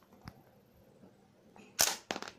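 A sharp plastic clack from a LEGO brick-built gun near the end, after a faint click about a quarter second in.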